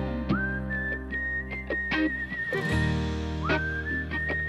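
Recorded soft-rock song with a whistled melody as its lead line. The whistle slides up into a long held note twice, once near the start and once near the end, over sustained bass and chords and lightly plucked guitar.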